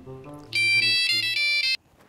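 Mobile phone ringtone for an incoming call: a quick melody of loud, high electronic notes that starts about half a second in and cuts off suddenly after little more than a second.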